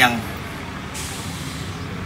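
Outdoor background noise during a pause in amplified speech: a steady hiss sets in suddenly about a second in and holds, the sound of a nearby road vehicle.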